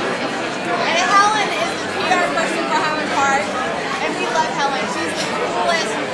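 Several people talking at once: overlapping, indistinct conversation and chatter among a group in a room.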